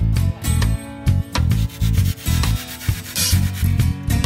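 A flexible blade is drawn back and forth across cured flotation foam, trimming it flush: a repeated rasping rub. Background music with a steady beat plays under it.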